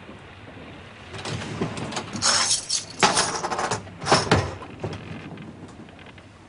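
A run of clattering, rattling noises starting about a second in, in several bursts over about four seconds, then dying away.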